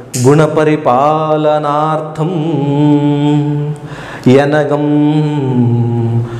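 A man chanting a verse of Old Kannada poetry in a slow, melodic recitation, holding long notes. The phrases break briefly about two seconds in and again near four seconds.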